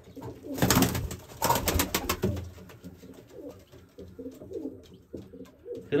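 Domestic pigeons cooing in a loft, low calls that rise and fall over and over. In the first two seconds, two short rustling bursts break over the cooing.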